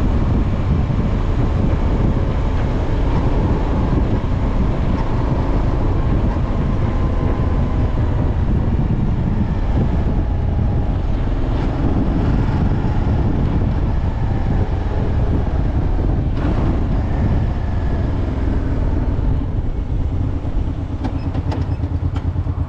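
Motorcycle being ridden steadily along a road: a loud, constant rush of wind and road rumble on the bike-mounted microphone, with the engine underneath. The level wavers a little near the end.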